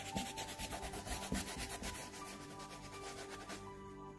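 Tissue paper rubbed quickly back and forth over oil pastel on paper, blending the colours, in fast even strokes of about ten a second that stop near the end. Faint background music runs under it.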